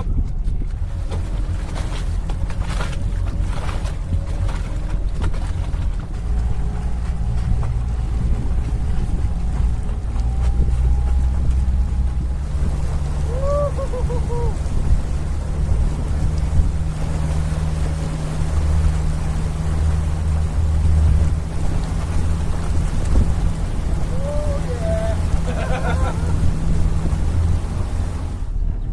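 Motorboat engine running under way while towing, its low drone growing stronger about six seconds in and again about twelve seconds in as the throttle is opened, with the wake rushing and wind buffeting the microphone.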